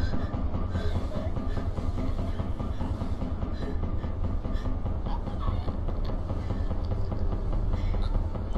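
A steady low rumbling drone, the tense underscore of a horror film, with faint small ticks over it and no let-up.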